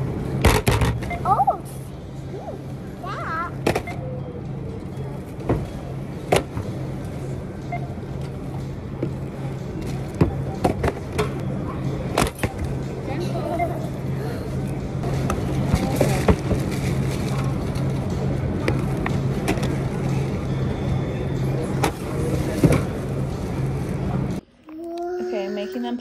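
Supermarket checkout lane: groceries knocked and set down on the conveyor belt in scattered sharp knocks, over a steady low hum, with voices and store music in the background.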